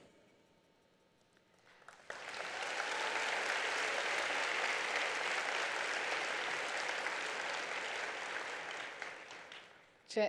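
Audience applauding. The applause starts about two seconds in, holds steady, and dies away near the end.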